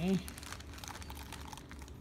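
A plastic zip-top bag crinkling, with small scattered clicks, as it is handled with a broken halogen projector lamp and its glass shards inside.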